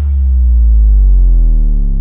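A loud, low synthesized tone sliding slowly downward in pitch, a comic falling-tone sound effect laid over the reveal of a drawing.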